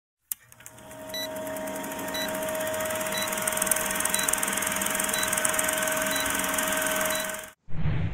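Vintage film-countdown sound effect: a steady film-projector whir with hiss and a low hum, marked by a short beep once a second as the numbers count down. It cuts off suddenly near the end.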